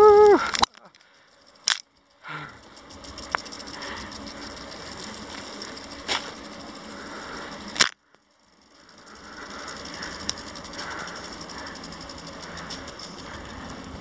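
Lawn sprinklers spraying: a steady hiss of water with fine, rapid ticking. It is broken by three sharp knocks and by two brief drops to near silence.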